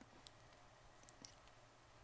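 Near silence with a few faint, scattered clicks from fingernails touching a clip-on lavalier microphone.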